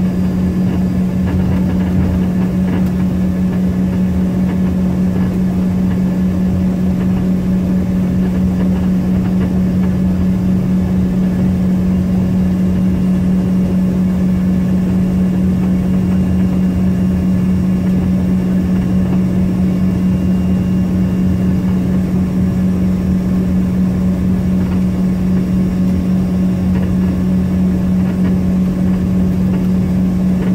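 Steady drone of an Embraer ERJ-145's two rear-mounted Rolls-Royce AE 3007 turbofans near idle as the jet taxis, heard inside the cabin, with a strong steady low hum running through it.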